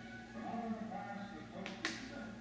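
Indistinct voices over a steady low room hum, with two sharp clicks close together near the end.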